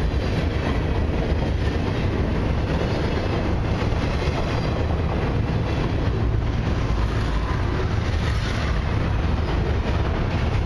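Cars of a long CP Expressway intermodal freight train rolling past close by: a steady noise of steel wheels running on the rails.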